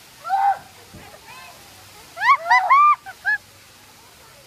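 High-pitched yelps and squeals from someone under a curtain of falling water: a short cry about half a second in, then a longer run of rising-and-falling squeals in the second half. A faint steady hiss of water runs beneath.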